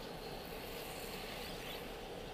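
Steady in-cabin hum of a car idling at a standstill, picked up by a dashcam's microphone.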